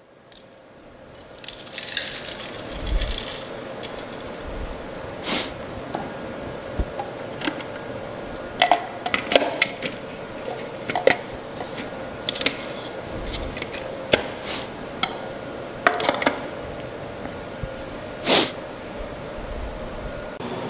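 Scattered clicks and knocks of a plastic food processor bowl being handled and fitted back onto its base, with the motor not running. A faint steady hum sits underneath.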